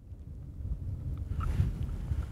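Wind rumbling on the microphone, with a few faint clicks about a second in.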